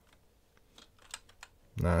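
A quick run of faint clicks on a computer keyboard, starting a little under a second in and lasting about half a second. A man's voice comes in near the end.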